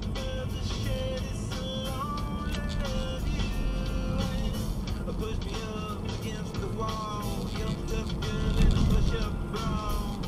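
Pop-rock music from a car radio playing inside a moving car's cabin, over the low rumble of the car and road.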